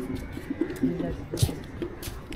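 A dove cooing in short, low, repeated notes, with scattered footsteps.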